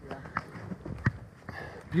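Skis and poles working up a snowy skin track: a few short knocks and crunches from steps and pole plants, roughly one every half second.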